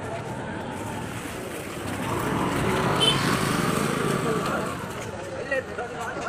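A motor scooter passing close by. Its engine noise swells from about two seconds in, is loudest around the middle, and fades away by about five seconds.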